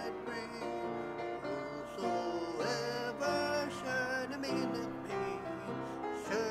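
A hymn being sung to piano accompaniment, the melody moving from note to note over held chords.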